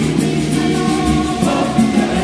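A women's choir singing a hymn together in a reverberant church, with a steady quick beat of high ticks behind the voices.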